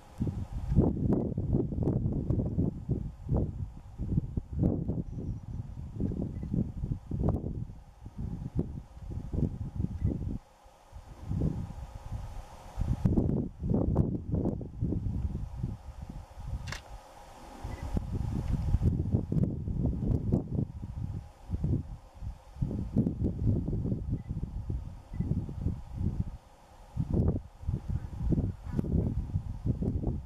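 Wind buffeting the microphone outdoors: an irregular low rumble that swells and fades in gusts, dropping away in a few brief lulls.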